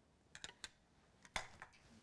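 A few faint, light clicks and taps as small objects are set onto the metal pans of a tabletop balance scale, the clearest about one and a half seconds in.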